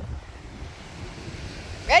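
Wind buffeting the microphone over the steady wash of surf, with a voice calling a rising "ready" right at the end.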